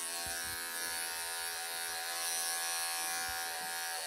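Cordless electric pet clippers running with a steady buzz as they are worked under a tightly matted, pelted coat close to the skin.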